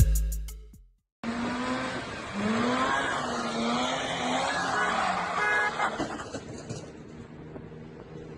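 A car engine revving hard, its pitch rising and falling, mixed with a harsh tyre screech as the car is driven in a drift. It eases off after about six seconds. In the first second, a musical ending fades out to a brief silence.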